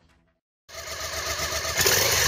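Motorcycle engine sound effect that comes in suddenly a little under a second in, after a moment of silence, and grows louder.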